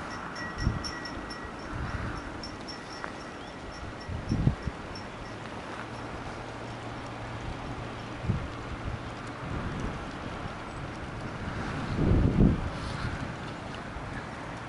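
Wind buffeting the microphone in gusts, strongest about four seconds in and again near the end, over a faint low steady hum.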